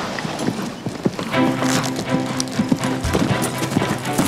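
Hoofbeats of a Hanoverian horse cantering over soft arena sand, uneven dull thuds. Background music with sustained tones comes in about a second in.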